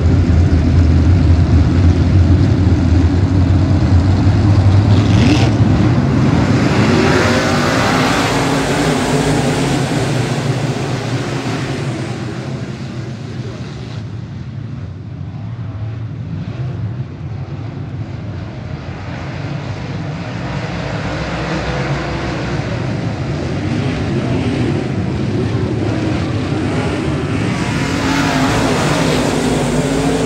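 A pack of dirt-track modified race cars racing flat out at the start of a feature. The engines are loudest at first, fade as the field moves away around the far end, and build again as it comes back around.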